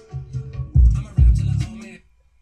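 Hip-hop track playing back, its opening beat landing with two heavy kick-drum and bass hits about 0.8 and 1.2 seconds in, then the bass holding on.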